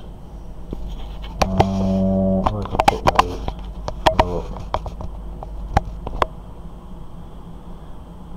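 A man's voice holding a steady, wordless hum for about a second, then a few short vocal fragments, while sharp little clicks come from handling tiny model-kit parts and screws, the last two a couple of seconds apart near the end.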